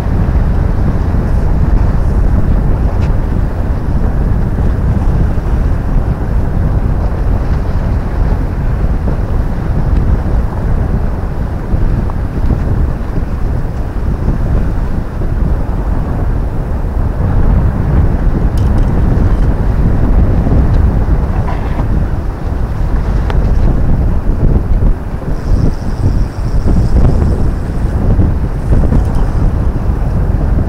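Wind buffeting the microphone: a loud, rough low rumble that rises and falls without a break.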